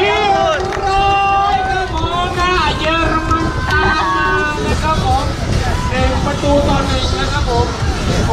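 A Thai-language commentator's voice over the loudspeakers, calling the play, with crowd chatter and a steady low rumble beneath.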